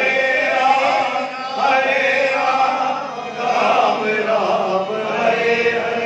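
Hindu devotional chanting: voices singing a repeated chant in a continuous sung line, with musical accompaniment.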